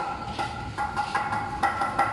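Handheld power tool running against a wooden beam: a steady whine, broken by several sharp knocks.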